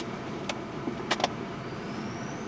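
Steady background hum inside a car cabin, broken by a few sharp clicks, with a faint high tone rising near the end.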